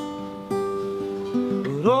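Steel-string acoustic guitar with a capo, strummed chords ringing between sung lines, a fresh chord struck about half a second in and again past the middle. A male voice comes in singing near the end.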